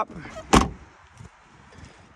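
A car door on a 2013 Ford C-Max Hybrid being shut: one solid slam about half a second in.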